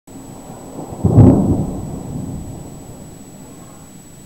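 A thunderclap from an approaching thunderstorm: a sudden deep rumble about a second in that fades slowly over the next two seconds.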